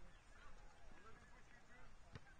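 Faint, distant shouting voices, a few short calls, over a low background rumble.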